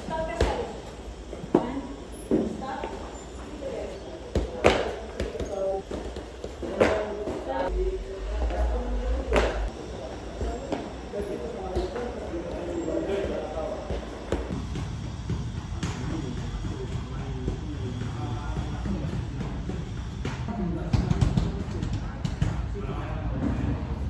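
Sharp knocks and thuds at uneven intervals, mostly in the first ten seconds, ringing on in a large echoing hall, with indistinct voices under them.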